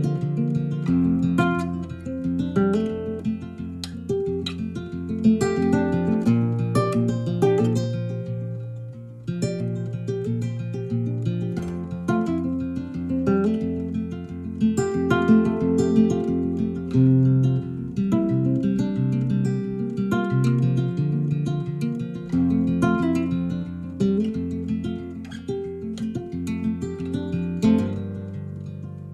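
Instrumental background music led by plucked and strummed acoustic guitar, with quick picked notes over slowly changing low notes.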